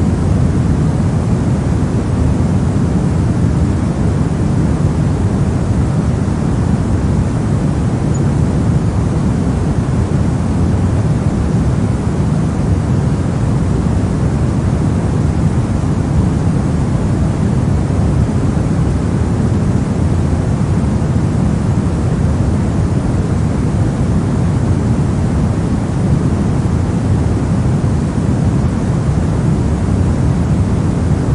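Steady pink noise played for sleep: an even, unbroken rush with most of its weight in the low end and no changes.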